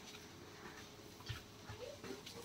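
Very quiet background with a faint short knock about a second and a half in and a faint, brief rising call near the end.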